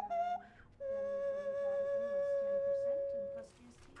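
Plastic nose flute played: two short notes stepping down in pitch, then one long steady held note that stops about half a second before the end.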